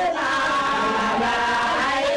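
A group of voices chanting together, holding long steady notes.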